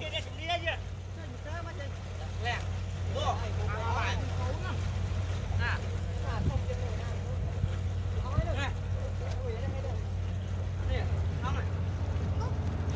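A motor running steadily with a low, even hum, while faint voices call out now and then.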